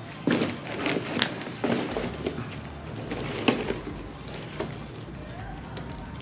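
Plastic wrapping crinkling and cardboard rustling as a wrapped car headlamp is lifted out of its box and the box is handled, in several short bursts.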